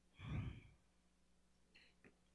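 A short sigh breathed out into a handheld microphone held close below the mouth, lasting about half a second, followed by near silence.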